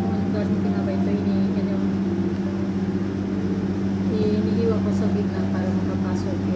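A steady low hum from a running kitchen appliance or motor, constant throughout, with faint voices in the background.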